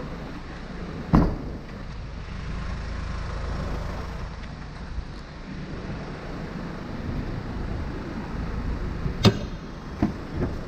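One loud thump about a second in as the liftgate of a 2003 Kia Sorento is shut, over a steady low rumble. A second sharp knock follows near the end.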